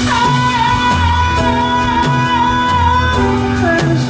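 Live band playing, with a singer holding one long high note for about three seconds, sliding into it at the start before the melody moves on.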